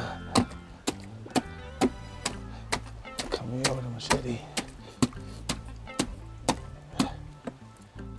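A flat spade chopping down into soft kitchen scraps in a plastic tote: steady, even strikes about two a second, over background music.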